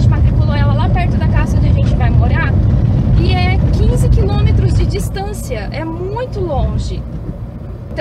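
A woman talking over the steady low rumble of a car's engine and road noise heard inside the cabin while driving; the rumble drops noticeably about five seconds in.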